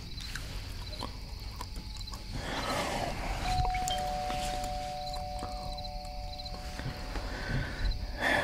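Two-note doorbell chime: a higher note about three and a half seconds in, followed half a second later by a lower one, both ringing on for about three seconds. Under it, crickets chirp faintly at a steady rhythm.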